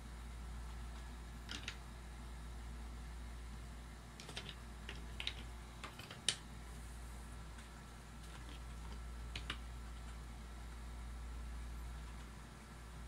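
A low steady room hum with a handful of light, sharp taps and clicks from a pencil and hands on paper on a tabletop. The taps come singly or in short clusters, most of them in the middle.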